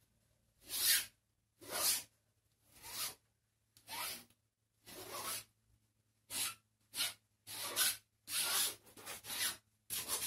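Palette knife dragging thick acrylic paint across paper in short scraping strokes, about one a second, each a brief rasping swish.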